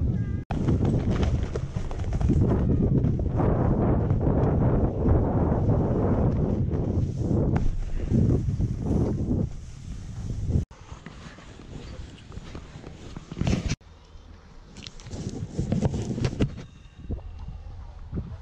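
Snowboard sliding and scraping over snow, with wind rumbling on a moving action camera's microphone. It is loud for about the first ten seconds, then drops abruptly to a quieter scraping with a few louder swells.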